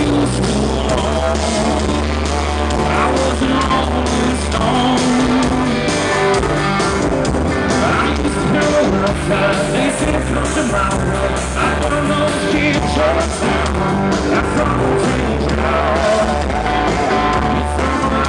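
Live country-rock band playing a song with acoustic and electric guitars and drums over a heavy bass, with sung lead vocals, recorded from the crowd at a loud, steady level.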